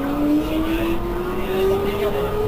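Irisbus Cristalis ETB18 trolleybus standing, its electric equipment giving a whine that rises slowly and evenly in pitch.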